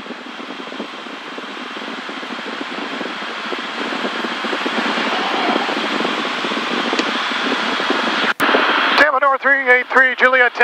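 Steady engine and airflow noise in the cabin of a Cirrus SR20 in a descent, growing steadily louder as airspeed builds. A single click comes about eight seconds in, and a man's voice starts just before the end.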